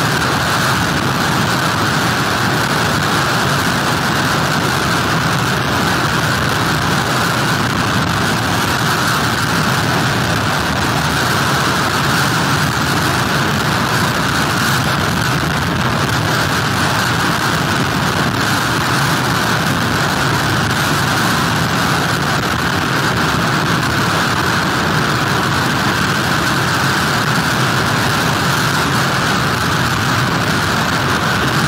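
Steady, unbroken noise of hurricane wind and rain with heavy surf, loud and even throughout.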